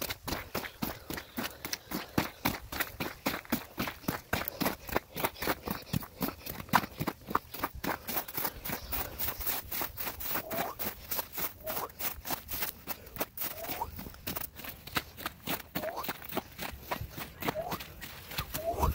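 Footsteps at a steady walking pace, crunching across wet, half-frozen mud and then snow-covered ground.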